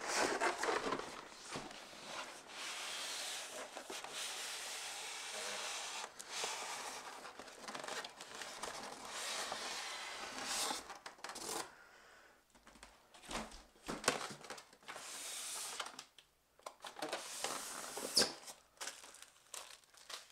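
Cardboard shipping box being lifted and slid off a styrofoam packing block: long scraping and rubbing of cardboard against foam through the first half, then shorter scuffs, crinkles and a few sharp knocks as the foam and box are handled.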